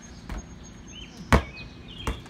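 A sharp knock a little past halfway, with a softer one shortly before it, over outdoor background with birds chirping.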